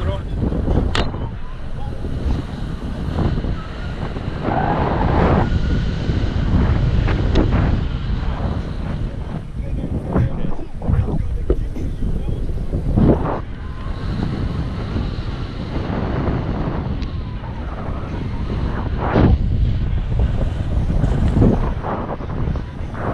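Airflow buffeting the camera microphone in flight under a tandem paraglider: a steady, loud wind rumble, broken by a few sharp knocks about a second in, near the middle and near the end.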